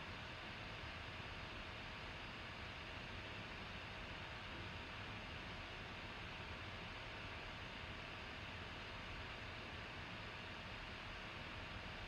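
Quiet, steady hiss of microphone and room noise with a faint steady hum underneath; nothing else happens.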